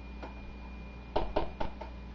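Plastic food containers and dishes handled on a kitchen counter: a faint click, then a quick run of four sharp clicks and knocks about a second in.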